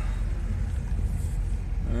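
Truck engine running and a steady low rumble of slow driving on an unpaved dirt street, heard from inside the cab.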